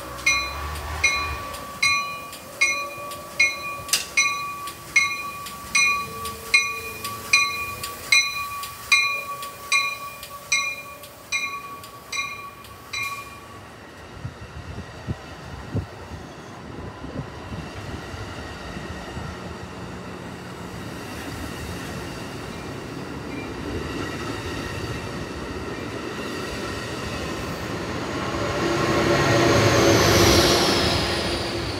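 Amtrak Pacific Surfliner train pulling out cab car first. A bell dings steadily about one and a half times a second until about 13 s in. The bilevel cars then roll past, and the diesel locomotive pushing at the rear grows loud as it passes near the end.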